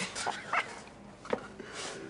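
Men chuckling and laughing softly in a few short, breathy bursts.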